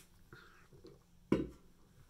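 Quiet room tone broken by a single short thump about a second and a half in.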